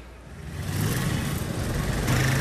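A motor vehicle engine running, a steady low rumble that rises in about half a second in and then holds.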